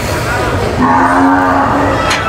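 A cow lowing: one moo at a steady low pitch, about a second long, starting just under a second in.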